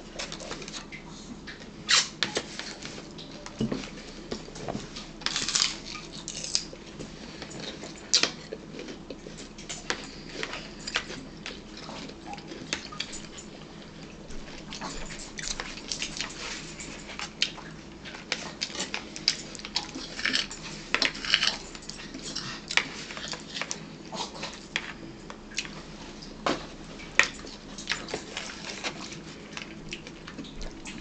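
Raw celery being chewed close to the microphone: irregular crisp crunches and wet mouth sounds, scattered throughout with no steady rhythm.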